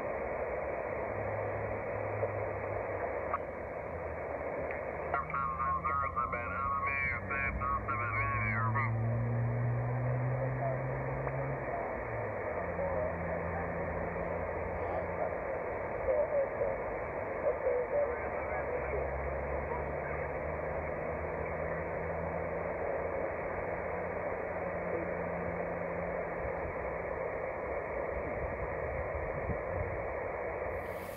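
Yaesu FT-817 receiver audio while tuning across the 20-metre amateur band in upper sideband: steady band hiss with mistuned single-sideband voices whose pitch shifts in steps as the dial moves. A warbling pitched signal comes through about five seconds in and lasts some four seconds.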